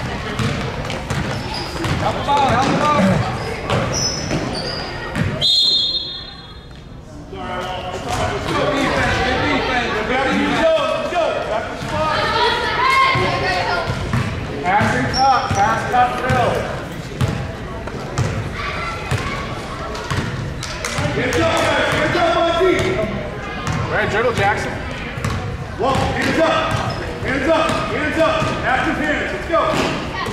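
A basketball being dribbled and bouncing on a gym floor, with people talking in the background throughout.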